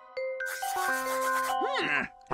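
Cartoon sound effect of a pen scribbling fast on paper, a rough scratching that starts just after the beginning and stops near the end, over light background music.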